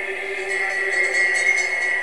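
Television broadcast sound of a stadium athletics race, heard through the TV speaker: steady ringing tones under a crowd-like hiss that swells slightly about half a second in.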